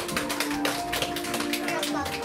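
Several people clapping their hands, quick irregular claps several times a second, over a long held musical note.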